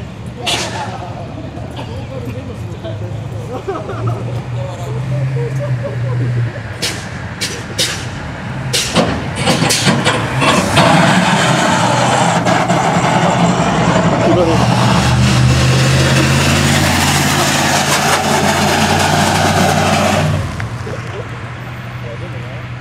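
Street-racing cars run hard at full throttle past the roadside. A loud engine sound lasts about ten seconds from about halfway in and then stops suddenly near the end. Before it come a few sharp cracks.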